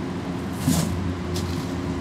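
Thin plastic bag around a head of iceberg lettuce rustling briefly twice as it is picked up, over a steady low machine hum.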